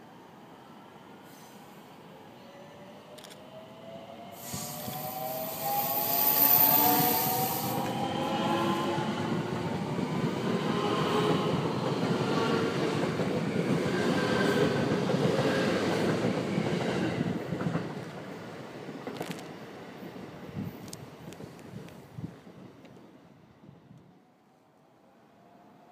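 JR West 521 series electric multiple unit, three two-car sets coupled, passing close by: its motor whine rises in pitch as it approaches, then the loud rush of the cars going past lasts about twelve seconds and fades with a few sharp clicks near the end.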